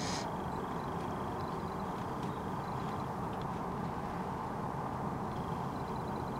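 Steady low background noise, with faint high chirps and a few light ticks now and then.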